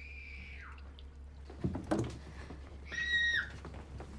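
Faint high-pitched screams from a girl, one at the start that falls in pitch and another about three seconds in.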